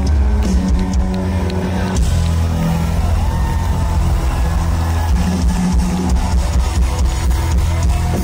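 Live rock band playing loud and steady with no vocals: electric guitar over bass and a drum kit keeping a regular beat.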